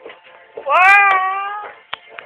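A loud, high-pitched cry that rises in pitch and then holds for about a second, over music playing in the background.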